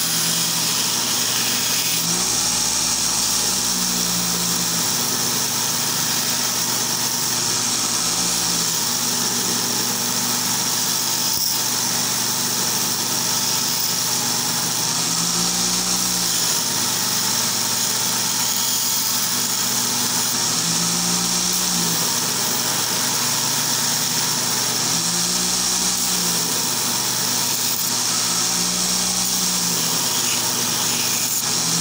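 Belt grinder running steadily, its abrasive belt grinding a small steel knife blade pressed against it.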